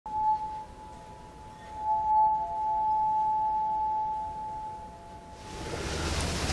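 Pure, bell-like ringing tones struck over a title card: one tone sounds at the start and is renewed about two seconds in, when a second, slightly lower tone joins it. Both ring steadily, then fade out a little after five seconds.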